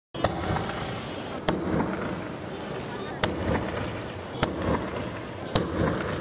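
Fireworks going off: five sharp bangs, roughly one every second or so, over a continuous crackling, fizzing bed.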